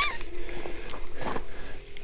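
Small spinning reel on an ice-fishing rod being cranked to reel in a hooked fish, with faint irregular clicking from the reel.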